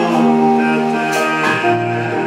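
Live acoustic band music, with plucked guitar and held melodic notes, in an instrumental stretch of the song.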